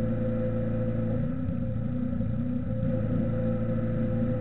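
A steady hum with several fixed tones, strongest in the low and middle range, with a low wavering sound from about one to three seconds in.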